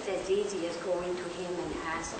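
A person's voice drawing out long, wavering notes.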